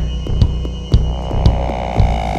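Instrumental band music: a drum-machine kick thumping about twice a second over a low bass drone, with held synthesizer tones above it.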